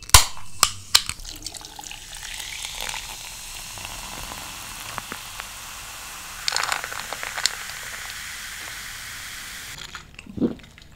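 An aluminium Coca-Cola can snaps open with a sharp crack. The cola is then poured over ice cubes in a glass and fizzes with a steady hiss, crackling louder for about a second around six and a half seconds in.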